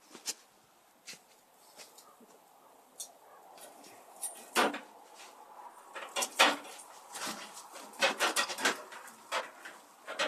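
Scattered clicks, light clinks and plastic rustling as the strap clamp on a dust collector's upper filter bag is worked loose by hand, with a quicker run of clicks in the second half. No motor is running.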